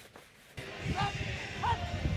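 Outdoor ambience of an American football game: an even background noise with two short, distant calls about a second apart.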